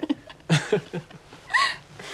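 Young women laughing softly in a few short voiced bursts, then a brief high-pitched squeal that rises and falls.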